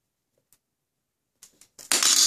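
Near silence in a small room, broken by a faint click about half a second in and a few soft clicks near the end as the small receiver and boat hull are handled.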